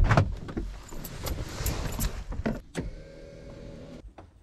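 Clicks and knocks of things being handled inside a Dodge minivan, then about three seconds in a quieter, steady electric-motor hum like a power window running.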